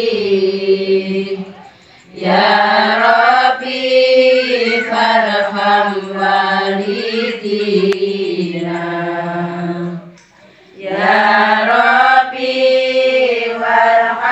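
A group of women chanting an Islamic devotional song (sholawat) together in unison, on long held, slowly gliding notes. The singing breaks off briefly for breath about two seconds in and again about ten seconds in.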